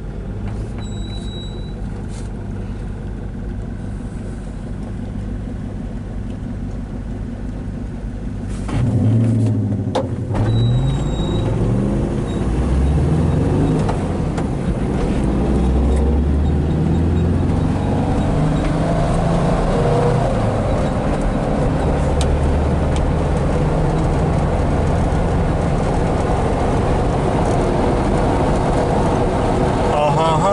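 Air-cooled flat-four engine of a 1977 Volkswagen campervan idling steadily, heard from inside the cab. About nine seconds in it pulls away louder, revving up and dropping back several times through the gear changes, then settles into a steady cruise.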